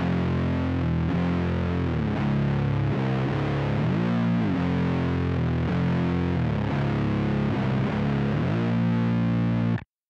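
Heavily distorted SG-style electric guitar, tuned down to C standard, playing a slow riff of sustained low notes with repeated slides up and down the neck. The sound cuts off abruptly just before the end.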